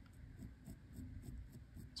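Ballpoint pen scratching faintly on textured watercolor paper in short, irregular shading strokes.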